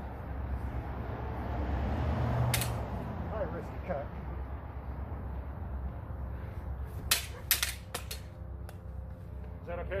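Backswords striking together in a fencing exchange: one sharp clack about two and a half seconds in, then a quick flurry of five or so clacks about seven seconds in, over a low steady background rumble.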